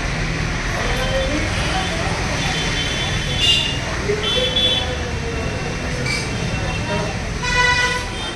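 Indistinct voices over a steady low rumble, with short high tooting tones about three and a half and four and a half seconds in and a louder, fuller toot near the end.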